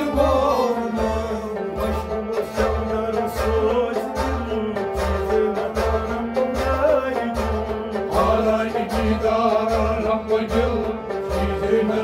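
Live Kashmiri Sufi song: a man singing over a harmonium, with a bowed sarangi and a plucked rabab, over a steady low drum beat.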